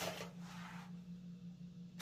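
Quiet room tone with a steady low hum and a faint hiss that fades after about a second.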